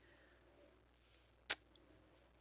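Faint room tone with a single sharp click about one and a half seconds in.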